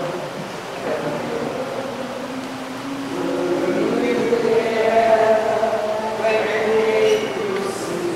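Slow hymn singing, voices holding long, slightly wavering notes that swell in the middle of the passage.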